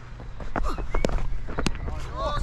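A batter's footsteps on a cricket pitch, an irregular string of short steps with sharper knocks about a second in and again near the end.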